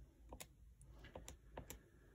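Faint plastic clicks of TI-84 Plus calculator keys being pressed, about six spread over two seconds, as the intersect function is chosen and its prompts are stepped through.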